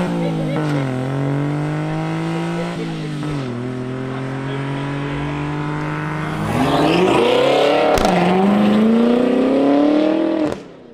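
Honda Acty kei truck engine accelerating through its exhaust as the truck drives past. The pitch rises, drops back with each gear change and holds steady, then climbs louder from about six and a half seconds in, with one more quick drop near eight seconds before rising again.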